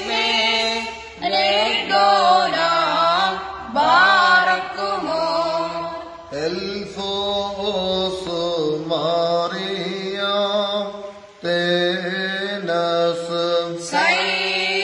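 Unaccompanied Syriac liturgical chant (kukliyon) sung by a male voice in long, ornamented phrases, with short pauses for breath between them.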